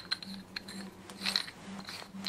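Faint metallic clicks and light scraping as a bronze steering-box nut is turned by hand along its hardened five-start worm, with a small cluster of clicks a little past halfway. The nut has gone sloppy on the worm. A faint steady hum runs underneath.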